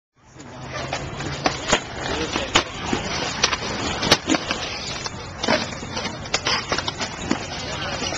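Kick scooter wheels rolling on concrete, with several sharp clacks as the deck and wheels strike and land on the ground.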